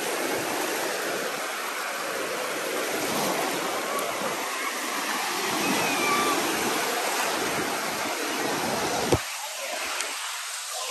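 Shallow surf washing in over sand, a steady rush of water with splashing from feet wading through it. The sound cuts off suddenly with a click about nine seconds in, giving way to a quieter background.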